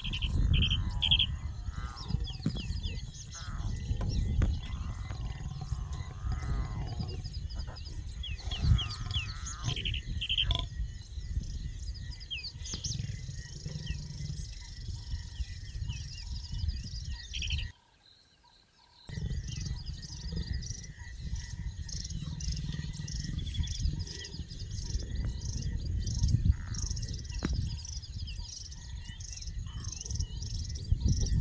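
Many small birds chirping and calling in the bush over a steady low rumble, which cuts out for about a second just past the middle.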